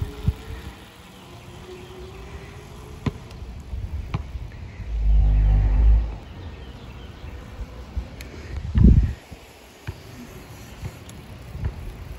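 Faint rising whine of an e-bike's electric motor as it pulls away. Two loud low rumbles of wind on the microphone follow, about five and nine seconds in.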